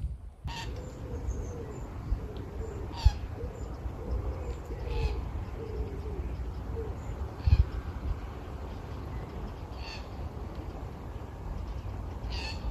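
A bird giving a run of short, low hooting calls for the first seven seconds or so, with a few brief higher calls from other birds, over a steady low wind rumble on the microphone.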